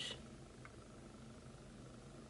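Quiet room tone: a faint steady low hum with light background hiss, and one small faint tick about two-thirds of a second in.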